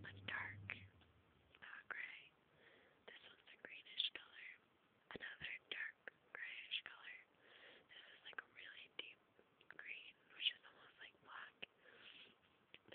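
A person quietly whispering, in short breathy phrases, with a few faint clicks.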